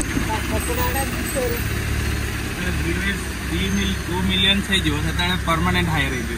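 Maruti Suzuki Swift hatchback's engine idling with a steady low hum, ready to drive off. People talk over it from about halfway through.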